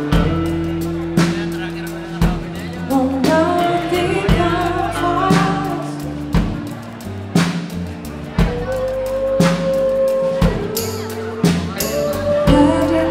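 Live soul-pop band playing a slow song: drum kit striking about once a second over bass, electric guitar and electric keyboard, with a melody line gliding above.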